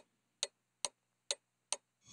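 Clock-like ticking: five sharp, evenly spaced ticks, a little over two a second, with silence between them.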